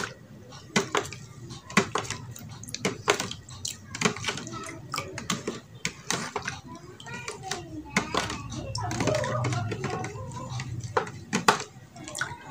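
A thin metal spoon stirs soapy bubble liquid in a clear plastic tub, clicking and scraping against the tub's sides and bottom in irregular quick taps.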